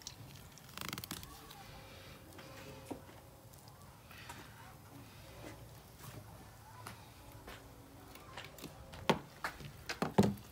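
Fillet knife cutting through albacore tuna flesh with gloved hands handling the fish: faint, soft wet slicing and squishing sounds, with a few sharp knocks near the end.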